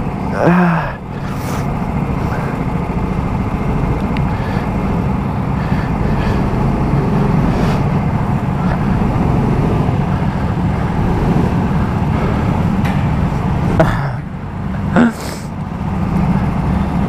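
Go-kart engines running on the track as a steady, continuous drone.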